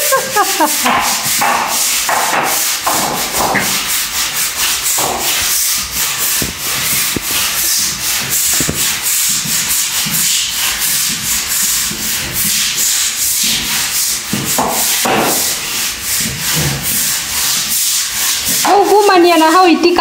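Stiff-bristled broom scrubbing a wet tiled floor in quick, repeated back-and-forth strokes, bristles rasping against tile being cleaned with an acid wash.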